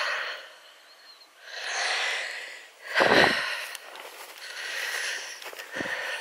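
A person breathing close to the microphone in slow swells, about a second each, with a low bump about three seconds in and another just before the end.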